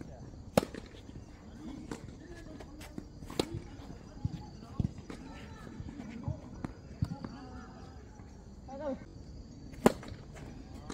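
Tennis balls struck with rackets and bouncing on the court during a rally: a string of sharp, short pops, the loudest about half a second in and just before the end.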